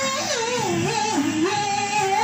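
A woman singing into a microphone: a run of notes winding up and down in pitch, then one note held near the end.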